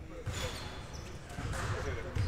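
Basketballs bouncing on a gym floor, a few separate thuds, with faint voices in the background.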